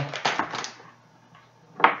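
Rustling and crinkling of a Mountain House freeze-dried meal pouch being handled, a few quick crackles in the first half-second.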